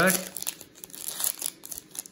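Plastic wrapper of a Donruss basketball card pack crinkling as it is handled and pulled open: an irregular run of small dry crackles.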